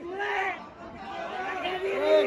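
A group of people's voices calling out and chattering over each other, several voices overlapping.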